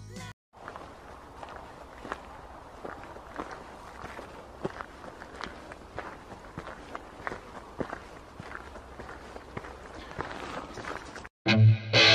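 Footsteps of a person walking through woodland, light irregular crunches and snaps on the forest floor at about two steps a second over quiet outdoor hiss. Near the end, loud music cuts in.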